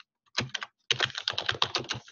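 Typing on a computer keyboard: a short burst of keystrokes about a third of a second in, then a quick, dense run of key clicks from about a second in.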